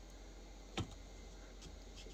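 One sharp click a little under a second in, with a few faint ticks around it, from a small homemade mechanical rig.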